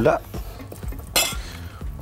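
Kitchen utensils clinking and scraping against bowls and dishes, with one sharper clatter a little past halfway.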